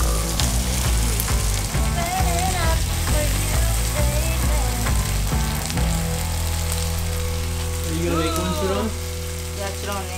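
Pork belly (samgyeopsal) and bean sprouts sizzling in a hot grill pan as chopsticks turn the meat, with background music playing underneath.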